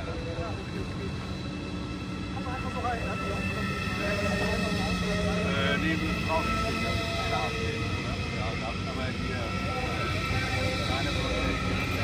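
Deutsche Bahn ICE electric high-speed train rolling slowly past: a steady rumble of wheels on rails with a held whine from its electric drive, growing slightly louder a few seconds in.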